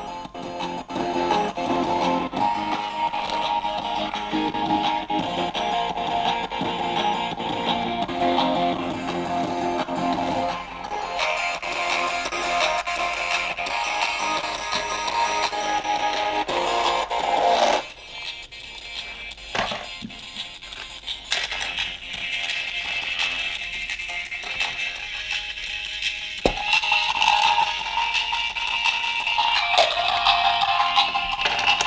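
Guitar music played back through a small homemade Bluetooth speaker (a 3 W Bluetooth amplifier board driving a small 8-ohm driver) while its loudness is measured. A little past the middle the sound turns thinner and quieter, with a few knocks as the speaker is handled, then comes back fuller after a click.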